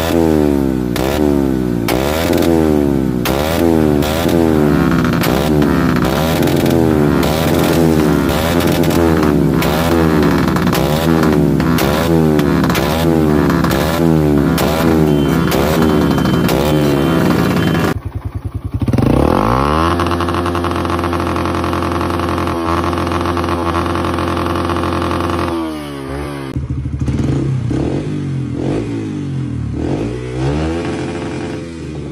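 Yamaha XTZ 125 single-cylinder four-stroke engine with an aftermarket exhaust, revved repeatedly up to the rev limiter and dropping back, about three times every two seconds. After a sudden change about two-thirds of the way through, a motorcycle engine climbs to a steady high rev and holds it for several seconds, then revs rise and fall again near the end.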